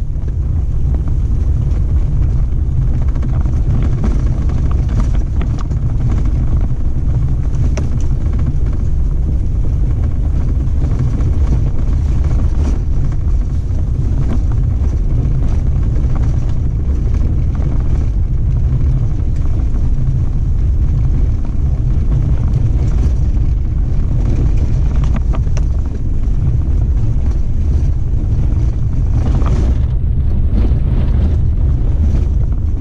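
Off-road vehicle driving on a sandy, gravelly dirt track: a steady low rumble of engine and tyres, with scattered small knocks and rattles.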